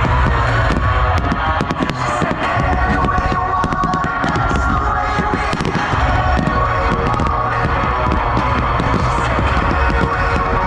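Fireworks bursting and crackling, with many sharp cracks throughout, over loud music played for the display.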